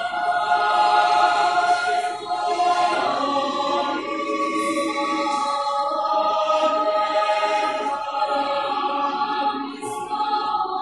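A choir singing slowly in held chords, the notes changing every few seconds.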